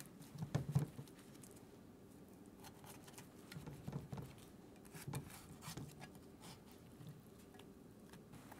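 A serving spatula cutting through a baked clafoutis and scraping against the enamelled cast-iron pan: a few faint, soft scrapes and knocks, the loudest about half a second in.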